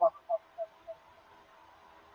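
A pause in a man's sermon: his last word cuts off at the start. Three faint short tones follow about a third of a second apart, each quieter than the last, then faint hiss.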